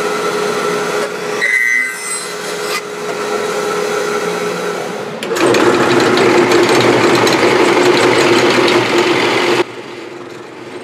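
A bandsaw runs steadily, then about five seconds in a drill press takes over, boring a large bit down into a wood blank. The drilling is the louder sound, a rough grinding over a steady motor tone, and it stops suddenly near the end.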